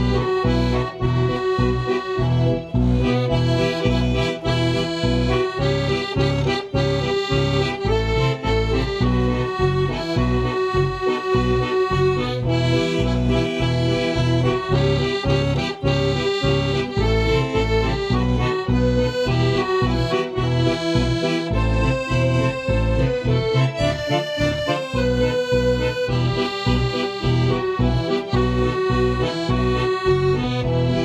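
Piano accordion played solo: a held, sustained melody on the right-hand keyboard over a steady, pulsing bass-and-chord accompaniment from the left-hand buttons.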